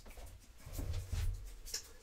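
Faint strokes of a dry-erase marker writing on a whiteboard.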